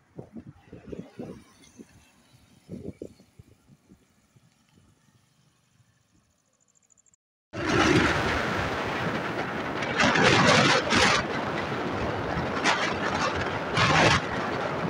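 Vehicle driving on a wet road, heard from inside: faint scattered low knocks at first, then about halfway through a sudden jump to loud, steady road and tyre noise that swells a couple of times.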